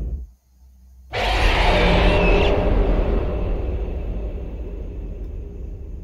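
Soundtrack music fades out into a second of near-silence, then a sudden loud rumbling sound effect hits and slowly dies away over several seconds.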